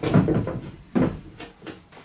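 Knocks and thumps of a person climbing into a steel tube-frame buggy chassis and settling onto its seat: a cluster of heavy knocks at the start, another strong knock about a second in, then a few lighter clicks. A steady high-pitched whine runs underneath.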